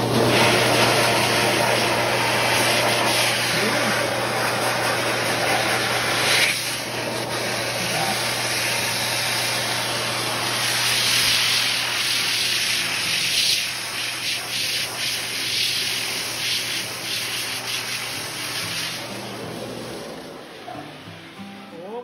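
A professional pet grooming dryer running, blowing air through its hose with a steady rushing noise over a low motor hum, its heater switched on. It gets quieter over the last several seconds, and the hum stops near the end.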